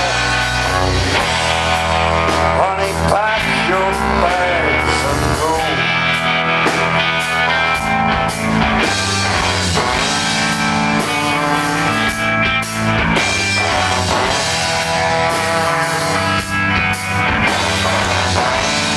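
Live rock band playing an instrumental passage: electric guitar, bass guitar and drum kit, with a bowed cello.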